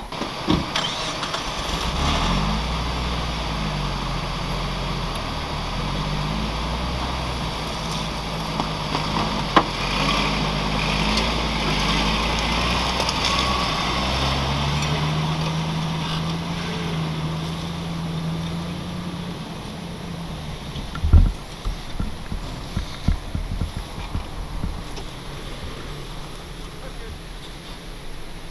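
Pickup and Jeep engines running at low throttle under load, their pitch shifting up and down and then holding steady, as the Jeep tows the stuck Ford F-150 out of soft sand on a rope. The engines die away, and a single sharp thump follows near the end.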